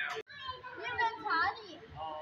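Young children's voices chattering and calling out, starting after a brief gap just after the start.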